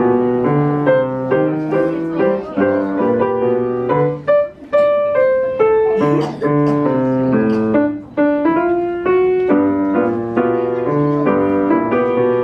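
Piano playing a melody of quick notes over a repeating low accompaniment, without a break.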